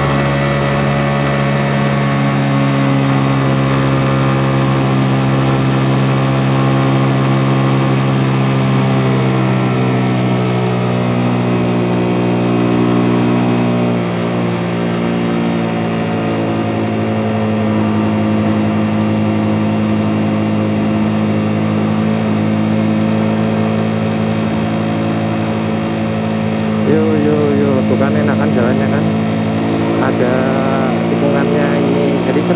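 Suzuki GSX-S150's single-cylinder four-stroke engine running steadily at cruising speed, heard from the rider's seat with wind noise on the microphone. Its note changes about halfway through, as the bike slows from about 70 to 57 km/h.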